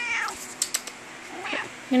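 Domestic cat meowing: a short call that rises and falls in pitch right at the start, then a briefer, higher call about one and a half seconds in.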